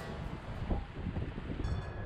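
Wind blowing on the microphone outdoors: a low rumble under a steady hiss.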